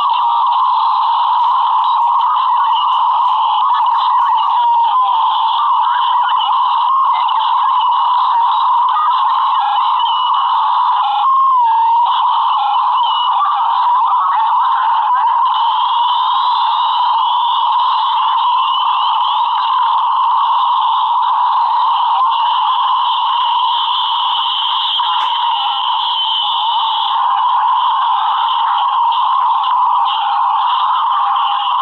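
Heavily distorted, sped-up video soundtrack that has been screen-recorded over and over: a loud, continuous, garbled jumble squeezed into a thin, tinny middle range, with a brief dropout about a third of the way in.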